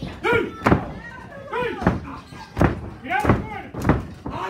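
Hard blows landing in a wrestling bout, about five sharp smacks roughly a second apart, with voices shouting between them.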